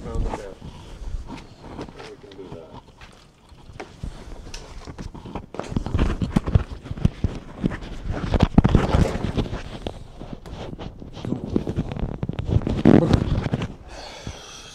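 Rustling and irregular knocks from a clip-on microphone being handled and fitted to a shirt, with muffled, indistinct voices.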